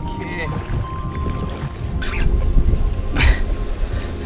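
Rumble of wind and boat motion on the microphone under background music with held notes, broken by two short hissing bursts about two and three seconds in.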